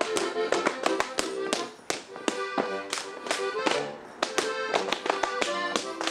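Schuhplattler slap dance: men's hands slap sharply on their leather shorts, thighs and shoes, several slaps a second in quick, uneven runs, over accordion folk music that drops back in the middle and swells again near the end.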